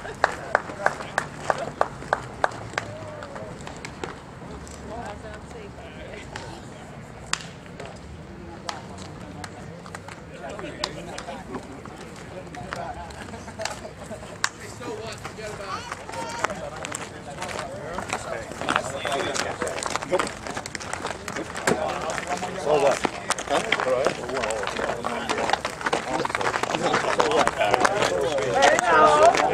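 A quick run of sharp hand claps over the first few seconds. After that comes indistinct chatter from the players, growing louder near the end.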